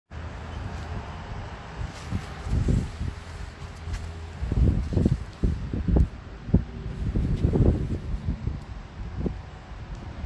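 Irregular low thumps and rumble on a handheld phone's microphone: handling noise, with wind buffeting the mic.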